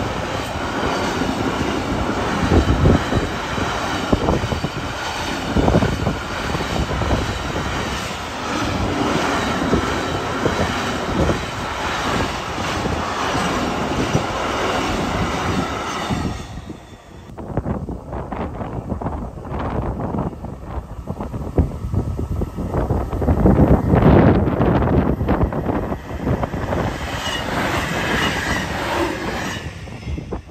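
Intermodal freight train of trailer-carrying wagons rolling past: a steady rumble of wheels on rail with a high ringing squeal over it. About 17 seconds in the train has gone, and what is left is low gusty wind buffeting the microphone.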